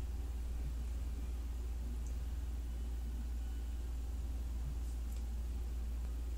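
Quiet room tone: a steady low hum with faint hiss, and no rotor or motor sound.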